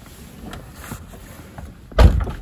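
Rustling and handling noise as someone settles into a car seat, ending in one loud, heavy thump near the end: the Porsche 718 Cayman S's door shutting, after which the cabin goes quiet.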